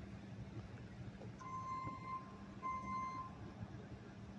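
Two long electronic beeps about a second and a quarter apart, from a vehicle's reversing alarm, over a steady low engine hum.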